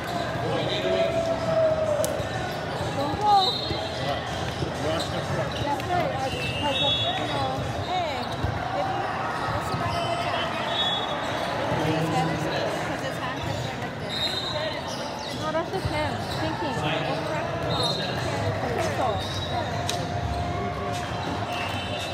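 Volleyball gym ambience: a steady babble of many voices echoing in a large hall, with scattered thuds of volleyballs bouncing and one sharper smack about three seconds in.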